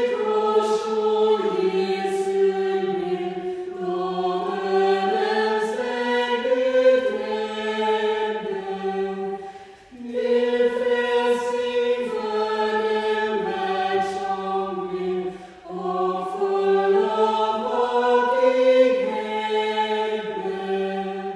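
Small choir of women's and men's voices singing a slow sung response in parts. The singing comes in phrases, with a short break for breath about halfway through and another a few seconds later.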